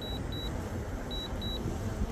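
Pairs of short, high, steady beeps repeating about once a second from the DJI Mavic Air 2's remote controller, its alert while the drone is returning home and landing on its own. Under them is a low steady rumble.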